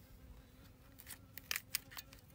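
Spring-loaded pruning shears cutting through the stem of a dragon fruit where it joins the cactus branch. There are a few sharp snips and clicks in the second half.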